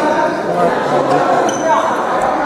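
Indistinct chatter of several people echoing in a large gymnasium hall, with no racket hits.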